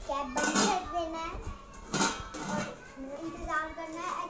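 A young child talking, with stainless steel cookware clinking sharply as a steel lid and pot are handled, once about half a second in and again at about two seconds.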